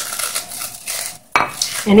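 Crispy fried rice crackers crackling and crunching as gloved hands crush and crumble them into a stainless steel mixing bowl, in irregular handfuls.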